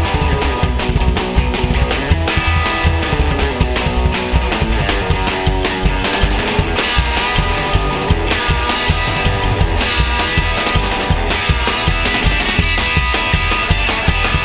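A psychobilly band playing an instrumental passage live: lead on an orange hollow-body electric guitar over upright bass and a busy, driving drum kit, with cymbal washes coming and going in the second half.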